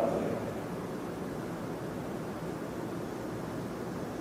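Steady, even background hiss of room tone, with no distinct events.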